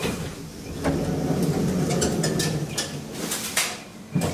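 Elevator car door sliding open: a rumble of about two and a half seconds with small clicks, followed by a sharp click near the end.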